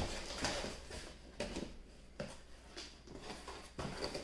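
A cardboard shipping box being opened by hand: faint scrapes and a few light taps as the flaps are folded back and handled.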